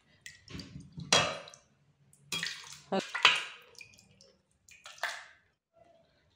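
A metal ladle knocking and scraping against a steel pot as it scoops lemon peel and liquid, with sloshing, in several separate bursts and short pauses between them.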